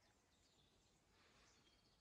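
Near silence: faint outdoor ambience.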